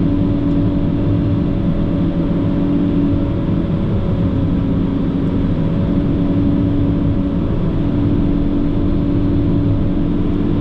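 PistenBully 600 winch snow groomer running steadily under load as it pushes snow, heard from inside its cab. The engine and drivetrain make a dense drone with a constant hum.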